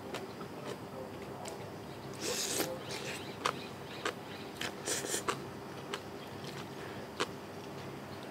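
Close-miked eating sounds of a person eating papaya salad with noodles by hand: chewing and small wet mouth clicks over a steady low hum, with two short hissing bursts about two and five seconds in.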